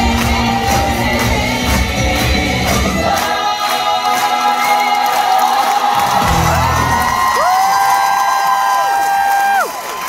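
A stage musical's cast and band playing the closing number live over audience cheering: a steady beat drops out about three seconds in, then long held notes bend and cut off together just before the end.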